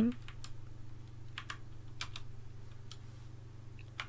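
A handful of computer keyboard key presses at irregular spacing as a two-digit number is deleted and retyped in a text editor, over a faint steady low hum.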